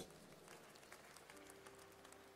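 Near silence: faint room tone in a large hall, with a faint steady held tone coming in a little past halfway.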